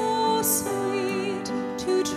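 Slow, gentle hymn music played on a church keyboard, with held notes changing every half second or so: the offertory hymn during the preparation of the gifts.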